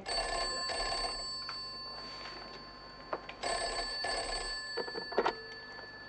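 Wall telephone ringing twice, each ring lasting about a second and a half and the two about three and a half seconds apart. A sharp click near the end as the handset is lifted.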